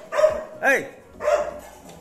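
A dog barking: three short barks about half a second apart.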